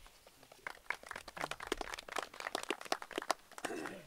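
Light, scattered applause from a small group of listeners: separate claps rather than a dense roar, dying away near the end.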